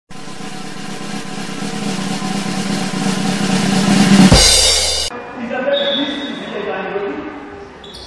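Intro music: a drum roll that swells for about four seconds and ends in a loud hit, cut off suddenly about five seconds in. After it, quieter voices.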